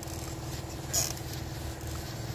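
A short hiss of spray from a knapsack sprayer's nozzle about a second in, over a steady low hum.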